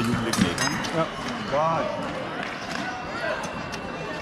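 Voices in a large, echoing sports hall, one rising and falling call standing out near the middle. Sharp knocks and taps come from fencers' feet on the piste, mostly in the first second.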